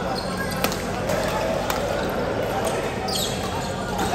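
Badminton rallies in a large hall: scattered sharp clicks of rackets striking shuttlecocks over a steady din of distant voices, with a brief shoe squeak on the court floor about three seconds in.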